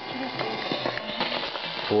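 Drake SW4A communications receiver playing Radio France International on 162 kHz longwave through its speaker. A weak, broken broadcast voice shows through steady hiss and frequent static crackles. This is distant longwave reception that the listener credits to solar-flare propagation.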